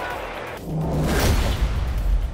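Broadcast transition stinger: a swelling whoosh that builds to a deep bass hit about a second and a half in.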